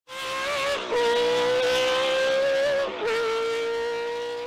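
Racing-car sound effect: one high, steady pitched note that breaks off briefly twice and picks up again, running on into a fade.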